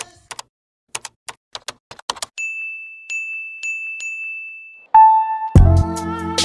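Intro-animation sound effects: a run of quick clicks like typing, then a steady high tone with light, evenly spaced ticks, a short lower tone, and a music beat with drum hits starting near the end.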